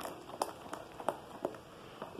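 Silicone spatula stirring a thick soap paste in a plastic basin, with a few faint clicks and wet sounds as it moves.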